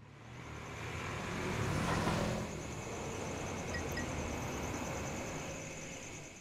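A sound-design swell: a rumbling, hissing whoosh that builds over about two seconds, holds steady, then fades out near the end, with two faint blips about four seconds in.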